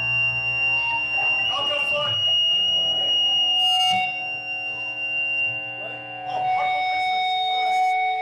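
Electric guitar feedback through the band's amplifiers. A steady high whistle holds for about four seconds and then gives way to a lower sustained ringing tone. A low amp hum drops away about two seconds in.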